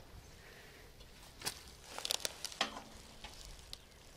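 Scattered light clicks and rustling from handling a Strand stage light on bubble wrap while working at it with a screwdriver, with a cluster of clicks about two seconds in.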